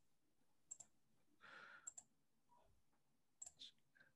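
Near silence with a few faint clicks, some in quick pairs, and a soft hiss in the middle.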